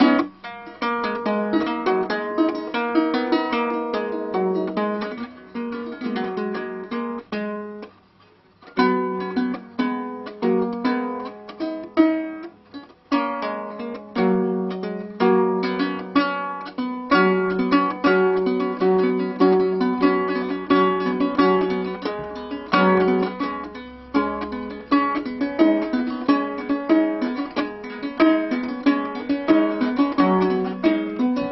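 Freshly strung and just-tuned Anglo-Saxon lyre played by hand: plucked single notes and chords, each ringing and dying away, with a brief pause about eight seconds in.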